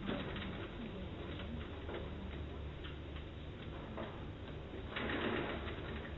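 Marker writing on a whiteboard: a run of light taps and short squeaks, with a denser scratchy stretch about five seconds in, over a steady low room hum.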